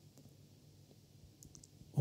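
Quiet room tone with a faint low hum and a few small, faint clicks about one and a half seconds in.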